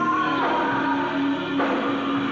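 Hard rock band playing live, recorded from the audience: held chords that change every second or so over a long sustained lower note.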